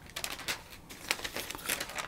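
Sheets of paper sewing pattern rustling and crinkling as they are picked up and handled.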